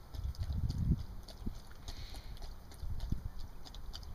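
A Belgian Sheepdog lapping water from a plastic bowl: a quick, steady run of wet laps, several a second, with a few louder low bumps.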